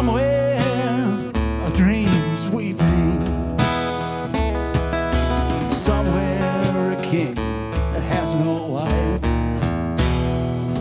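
Acoustic guitar strummed and picked with bending, wavering melody notes, with a hand drum keeping a steady low beat under it: an instrumental stretch of an acoustic blues-rock song.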